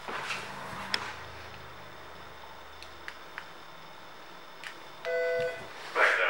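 A single electronic beep, about half a second long near the end, from the BMW K1600GTL's electronics as the key fob is used at the ignition. Before it there are faint handling sounds and a sharp click about a second in.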